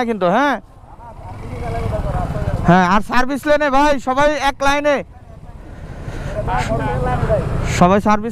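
Motorcycle riding noise, engine and wind rumble, rising gradually in loudness twice, under a man talking in short stretches.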